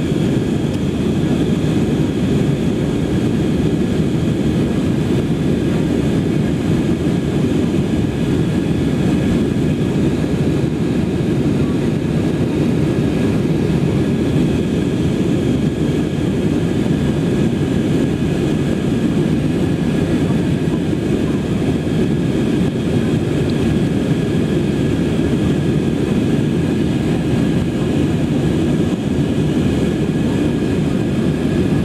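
Steady cabin noise of an Airbus A320-family airliner climbing after takeoff: a low, even rumble of engines and airflow, with a faint high whine from the engines above it.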